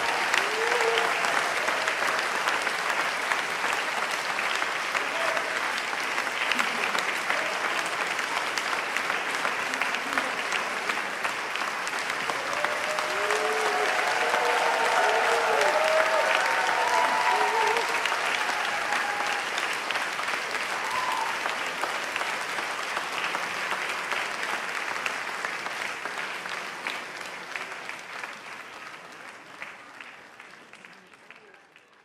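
Audience applauding steadily, with a few voices calling out about halfway through; the applause fades out near the end.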